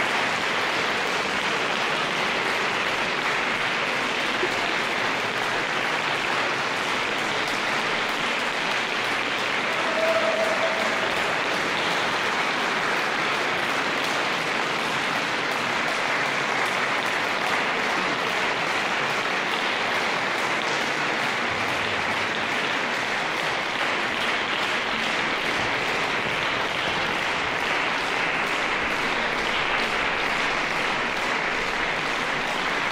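Audience applauding steadily in a reverberant concert hall at the end of a chamber-music performance. A short single pitched note cuts through about ten seconds in.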